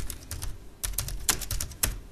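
Computer keyboard typing: a quick, irregular run of key clicks, used as a sound effect for on-screen text being typed out.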